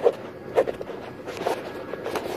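Footsteps at a walking pace, short soft thuds about every half second to second, with the phone rustling against clothing or a hand as it is carried.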